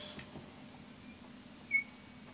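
A marker pen gives one short, high squeak on a whiteboard near the end, as it starts a stroke; otherwise low room tone.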